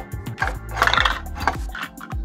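Toy kitchen fridge's battery-powered ice dispenser playing its electronic ice-cube sound effect as a cup is pressed against the lever: a noisy burst lasting about a second, loudest near the middle. Background music with a steady beat plays underneath.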